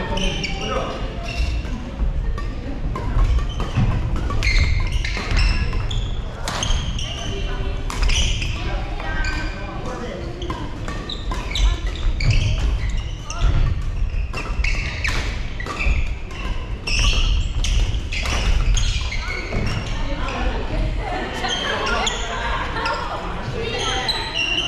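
Badminton rallies in a large gym hall: irregular sharp cracks of rackets striking shuttlecocks and thudding footfalls on the wooden court floor, with people talking in the background.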